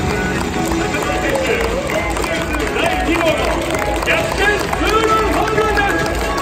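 Music and voices over a baseball stadium's sound system, with general crowd noise from the stands.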